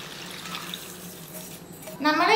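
Turmeric-salt water poured from a steel bowl into a pot of chopped lemon pickle: a soft, even pouring splash that dies away near the end.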